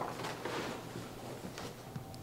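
Faint rustling of clothing and fabric with a few soft taps, as a person gets up off a wheelchair air cushion and another reaches down to it.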